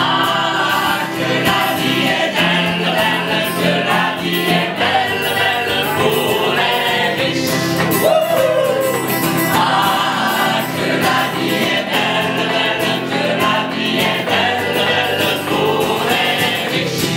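Mixed choir of men's and women's voices singing together. About eight seconds in, one voice swoops up and down in pitch above the others.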